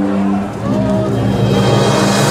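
Brass marching band playing long, held low notes, led by trombones and low brass, with a brief dip in loudness about half a second in.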